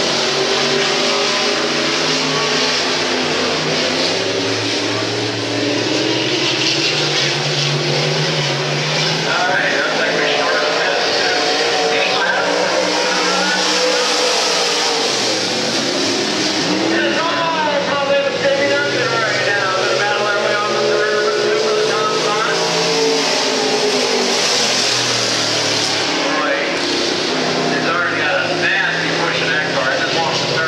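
Pro Stock dirt-track race cars' V8 engines racing around an oval, their pitch rising and falling as they accelerate down the straights and lift into the turns.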